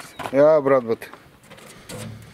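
A person's voice, one short utterance in the first second, followed by a couple of faint clicks.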